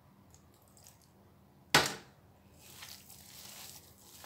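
A single sharp knock about two seconds in, then hands squishing and kneading damp gram-flour, potato and spinach pakoda mix on a plate.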